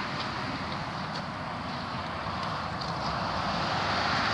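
Steady outdoor rushing noise that grows slowly louder, with a few faint ticks.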